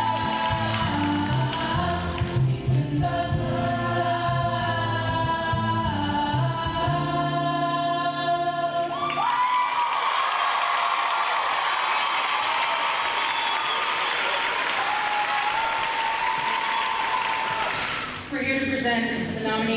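A stage ensemble singing with instrumental accompaniment, moving through long held chords; about halfway through the music ends and loud audience applause takes over.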